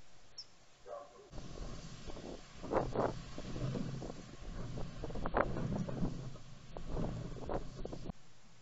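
Strong wind buffeting the trail camera's microphone: a low rumble that comes in gusts, swelling and fading, with the strongest gusts about three and five and a half seconds in. It starts suddenly after a quieter first second.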